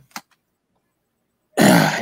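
A brief click, then a second and a half of near silence, then near the end a man's voice starts loudly.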